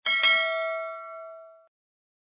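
Bell-chime notification sound effect for a bell icon being clicked: one bright ding that rings out and fades away after about a second and a half.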